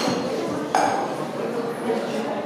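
Background murmur of people talking in a hall, with a sharp ringing clink about three-quarters of a second in and a fainter one at the very start.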